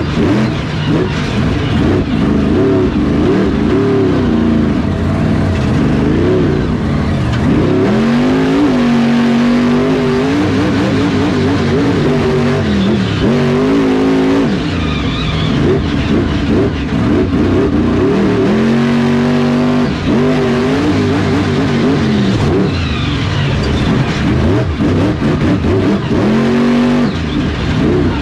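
Grave Digger monster truck's supercharged V8 engine, heard from inside the cab, revving up and down over and over as the throttle is worked, with short spells held at a steady pitch.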